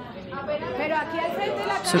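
Classroom chatter: several young people's voices talking at once in a room.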